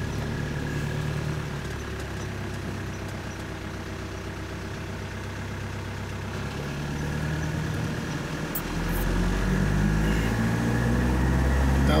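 Truck engine heard from inside the cab while driving slowly along a street. It runs steadily at first, then its note rises twice and grows louder over the last few seconds as the truck picks up speed.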